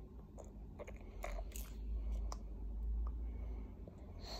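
A baby gnawing and mouthing a teether, with a run of short wet smacks and clicks, over a low rumble from about a second in.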